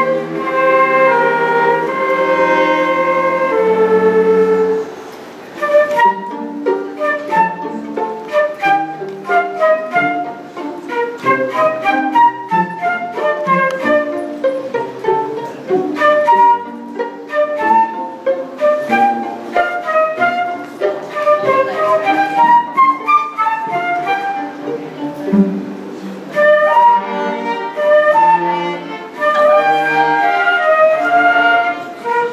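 Two flutes, a violin and a cello playing chamber music together. Long held notes open, then after a brief dip the players move into quick, short detached notes, and held notes return near the end.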